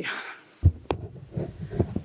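Handling noise from a gooseneck podium microphone as it is grabbed and adjusted: irregular low thumps and rumble, with one sharp click about a second in.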